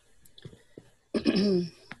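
A woman clears her throat once, a short rasp starting just past a second in. Before it there are only a few faint clicks.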